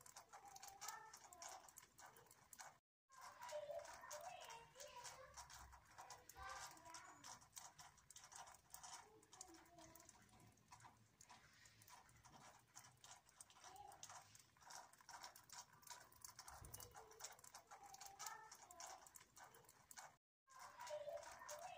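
Near silence: faint outdoor ambience with many soft scattered clicks, cutting out completely for a moment about three seconds in.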